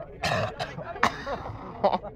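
A person hacking and clearing their throat in three short, harsh bursts.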